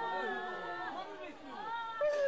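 Several people's voices talking and calling over one another.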